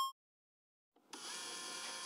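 A bright chime fades out at the very start, then after a moment of silence a cordless drill starts running steadily about a second in, its bit turning on a nail that it is being used to screw in.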